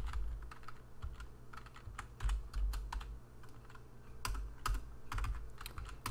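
Typing on a computer keyboard: irregular keystroke clicks at an uneven pace, with some dull low thumps among them.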